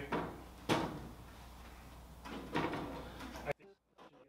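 Thin aluminium sheet being handled and bumped against a metal airframe: a sharp knock about a second in and a rattling clatter of the sheet later, then the sound cuts off abruptly near the end.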